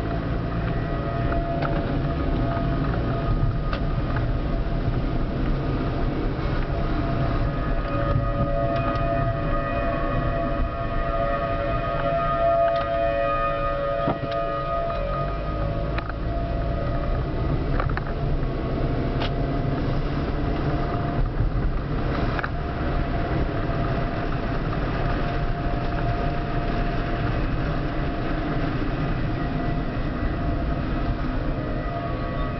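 Outdoor tornado warning sirens sounding the steady-tone Alert signal of a monthly test, heard from inside a moving car, with engine and road noise rumbling beneath.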